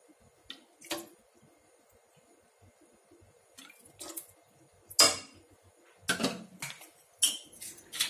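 Metal spoon stirring liquid sauce in a metal cooking pot, clinking against the pot a few times in short knocks, the loudest about five seconds in.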